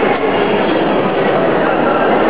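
A loud, steady rushing din with no clear tone or rhythm, the general noise of a busy sports hall.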